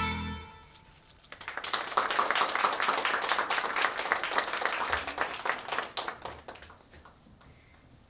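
The backing track of a pop song ends on its last chord, which dies away in the first second; then an audience claps for about five seconds, the clapping thinning out and stopping near the end.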